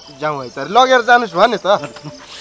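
Speech: a person talking, in Nepali dialogue.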